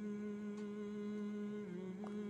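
A man's long, steady closed-mouth hum at one pitch, a hesitation hum while he pauses between phrases.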